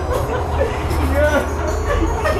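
Background music with a steady low bass, mixed with people's voices and short curving pitched sounds.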